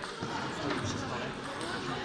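Sports-hall hubbub: several voices talking at once, with a few short clicks of table tennis balls bouncing on the tables.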